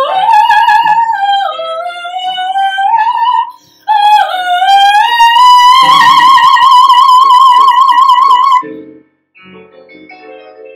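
A young woman singing a musical-theatre song in full voice over piano accompaniment. She takes a short breath about a third of the way in, then holds a long high note with a wide vibrato that cuts off near the end, after which the piano carries on alone with a rising run of notes.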